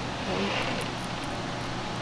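Knifeless tape filament being pulled through vinyl car wrap film, giving a soft hiss about half a second in, over a steady low hum.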